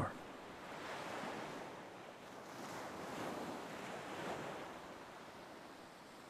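Ocean surf washing on a shore, a soft steady wash of noise that swells gently twice and eases off near the end.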